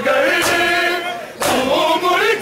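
A crowd of men chanting a noha refrain in unison, with a sharp slap of hands on bare chests (matam) about once a second, twice in this stretch, keeping the beat.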